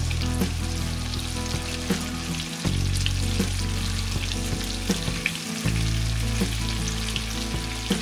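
Breaded chicken pieces deep-frying in a pot of hot oil: a steady sizzle with scattered crackling pops, over low sustained tones that shift twice.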